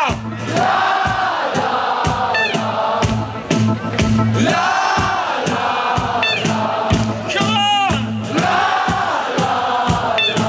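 Live band playing with a steady drum beat while a festival crowd sings along together, many voices holding the melody over the bass and drums.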